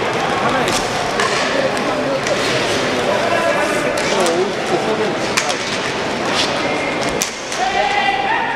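Inline hockey arena during play: a steady hubbub of crowd and player voices with calls and shouts, broken by sharp clacks of sticks striking the puck, the sharpest a little after seven seconds in.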